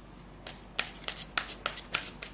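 Tarot cards being shuffled by hand: a quick, irregular run of crisp card clicks, about eight in a second and a half, starting about half a second in.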